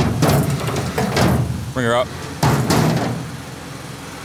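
Three loud clanks and scrapes against a tow truck's steel flatbed deck as a car is winched aboard, over the low sound of the truck's engine running.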